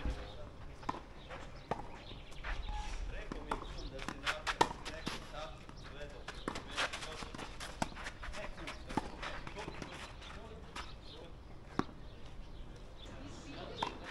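Tennis rally on a clay court: sharp racquet strikes and ball bounces come every second or two. Voices talk in the background.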